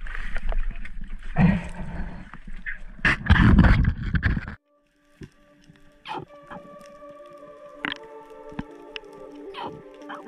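Wind and handling noise on a boat deck, loudest about three to four seconds in, then a sudden cut. After the cut comes music of held tones that step in pitch, with scattered sharp clicks.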